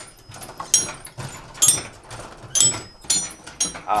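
Tower chime bells struck one note at a time from the wooden baton console, a slow tune picked out by a beginner, each strike ringing on. There are about six notes, somewhat unevenly spaced, a little under a second apart.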